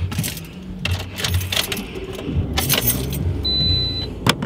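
Rustling and clicking from things being moved about inside a car, over the car's low rumble. Near the end a steady high electronic beep begins, the first of a repeating car warning chime.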